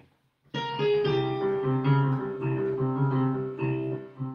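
Computer MIDI playback of a composition in Spanish Phrygian mode, starting about half a second in. A long held melody note sounds over a low note repeated in a steady pulse.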